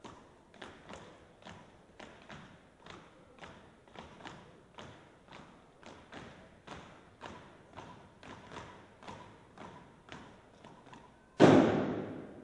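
Steady beat of sharp thuds, about three a second, from a drill team and drumline step routine. Near the end comes one much louder hit that rings on briefly.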